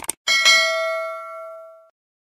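Subscribe-button animation sound effect: a quick double mouse click, then a notification bell ding that rings out and fades over about a second and a half.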